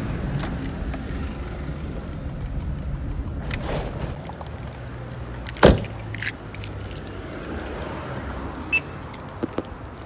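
Steady low rumble of passing road traffic with scattered light clicks, and one sharp knock a little past halfway.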